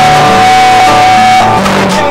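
Guitar playing a rock song, with one high note held for about a second and a half over lower notes that change underneath.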